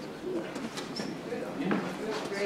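A bird calling amid faint voices, with a brief high note about a second in.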